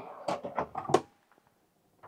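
A caravan cupboard drawer being handled and pushed shut: a few clicks and knocks in the first second, the sharpest just before one second in.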